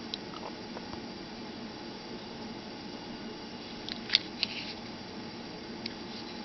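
Quiet room tone with a faint steady hum, and a few small plastic clicks from a Baofeng UV-5R handheld transceiver being turned over in the hand and its side buttons handled, one just at the start and a quick cluster about four seconds in.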